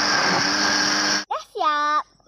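Electric countertop blender running steadily on a batter of eggs, flour and coconut milk, then cutting off abruptly about a second and a quarter in. A child's short spoken word follows near the end.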